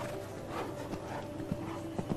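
Horse cantering on arena sand: a few dull hoofbeat thuds, mostly in the second half, with softer noisy swells before them.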